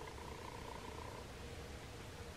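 Faint room tone: a low, fluttering rumble with a thin steady hum, one higher tone of which stops about a second in.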